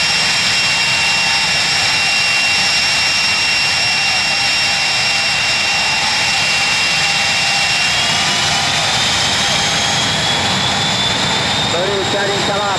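Jet dragster turbine engines running at the start line: a loud, steady roar with high whines on top. From about two-thirds of the way through, one whine climbs slowly in pitch as an engine spools up.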